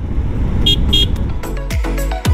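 Low steady rumble of a motorcycle under way, with two short high-pitched beeps a third of a second apart. Background music with a heavy, thumping beat comes in about a second and a half in.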